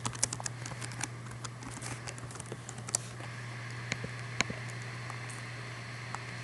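Keys tapped on a computer keyboard as a password is typed: a quick run of clicks over the first three seconds, then two single clicks about four seconds in. A steady low hum runs underneath.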